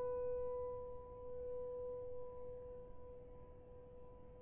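A single piano note ringing on from the last struck note of a short phrase, one steady tone that slowly fades and has almost died away by the last second.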